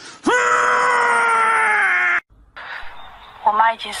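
A long, drawn-out wailing call whose pitch slides slowly down, cut off abruptly about two seconds in. Near the end, soft speech in Chinese begins.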